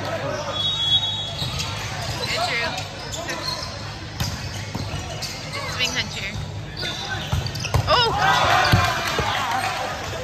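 Volleyball rally in a large gym: sharp thuds of the ball being struck and sneakers squeaking on the court floor, mixed with shouts from players and onlookers. The hits and squeaks bunch together about eight seconds in, as the rally is won with a kill.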